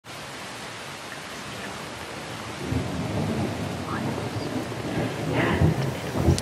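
Steady hiss of ocean surf, with wind rumbling on the microphone that grows louder after about two and a half seconds.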